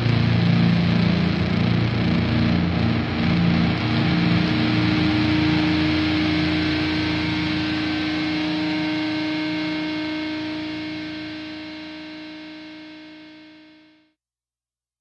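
Heavy distorted electric guitar and bass from a doom metal band. The band plays on for the first few seconds, then a final chord is held and rings out, fading slowly to silence as the song ends.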